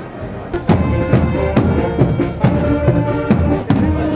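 Band music comes in loudly about half a second in: a steady drum beat of about two strokes a second under held notes.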